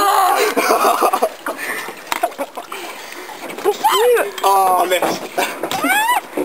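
Canoe paddle splashing water, with a person laughing loudly at the start and high, rising shrieks of laughter about four seconds in and again near the end.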